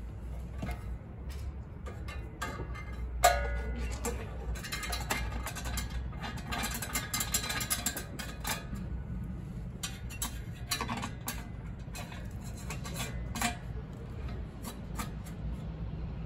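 Stainless steel scale indicator being fitted onto its stainless mounting bracket: scattered clicks, knocks and metal-on-metal scrapes as it is seated and the mounting knobs are threaded in, with one sharp knock about three seconds in. Underneath is a steady low rumble.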